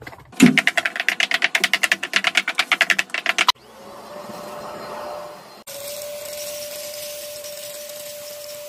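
A rapid run of loud clicks, about nine a second, for about three seconds. Then a cordless stick vacuum cleaner runs steadily with a constant whine, briefly cutting out and starting again.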